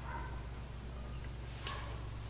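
Faint light knocks of pinto beans and fingers against a glass trifle bowl as the beans are laid in by hand, two short ringing taps at the start and near the end, over a steady low hum.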